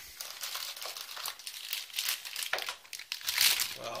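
Plastic wrapping around a graphics card crinkling and rustling as it is handled and lifted out of its box, in irregular bursts that grow louder near the end.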